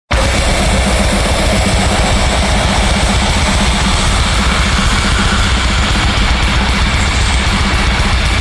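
Black metal song: loud, dense distorted guitars over fast drumming, beginning abruptly at full volume.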